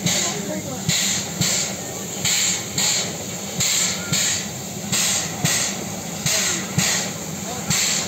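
A 1929 narrow-gauge coal-fired steam locomotive standing with steam up: it lets off steam in rhythmic paired puffs, about one pair every second and a half, over a steady hiss.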